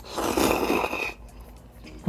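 One slurp of sotanghon glass noodles sucked into the mouth, a noisy rush of air and noodles lasting about a second.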